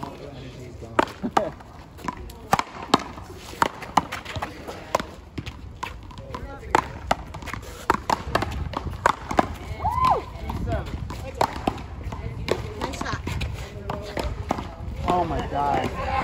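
Paddleball rally: a string of sharp smacks at irregular intervals, about one a second, as paddles strike the ball and it rebounds off the wall.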